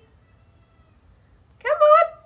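A pet cat meowing: a faint drawn-out call early on, then a louder meow near the end that rises in pitch and holds.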